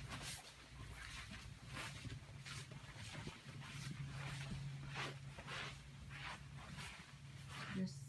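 Short rustling swishes, one or two a second, over a low steady hum that comes and goes.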